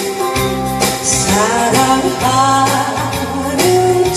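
A woman singing a Korean popular song into a microphone over an instrumental backing track.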